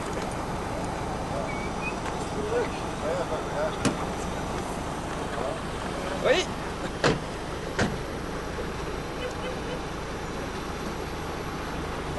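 Steady outdoor background at a car meet, with a sharp knock about four seconds in and two more near seven and eight seconds.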